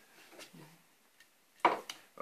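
Fingernail picking at the end of a strip of masking tape on a hockey stick blade to lift its edge: faint scratching, then two sharp clicks near the end.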